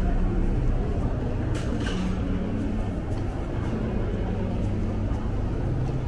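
Steady low rumble of public-space background noise with faint, indistinct voices and a few light clicks.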